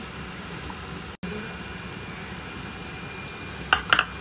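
Steady low kitchen background hum, cut off for an instant about a second in, with two sharp clicks near the end.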